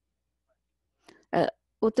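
Speech: about a second of silence, then a person's voice resumes with a short vocal sound and the first word near the end.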